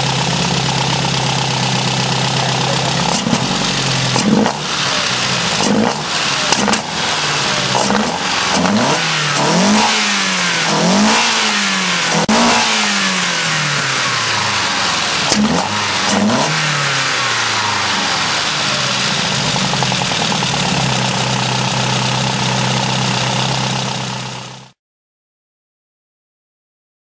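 Mercedes 190E Cosworth 16-valve four-cylinder engine on individual throttle bodies, idling, then blipped through a quick run of about a dozen short revs before settling back to a steady idle; the sound cuts off suddenly near the end. The throttle is being snapped open to set the acceleration enrichment on its programmable ECU after the main fuel map is done.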